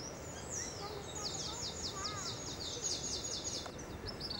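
A songbird singing outdoors: one high falling note, then a fast run of repeated high falling notes, about five a second, lasting nearly three seconds, over a steady background hiss.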